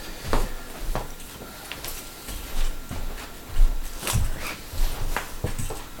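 Hands handling small lamp-kit parts and their plastic packaging: scattered clicks, knocks and rustles at irregular intervals, with a few low thumps.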